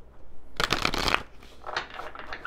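A deck of tarot cards being shuffled by hand: a dense run of quick card-on-card flicks about half a second in, lasting about half a second, then a few softer flicks near the end.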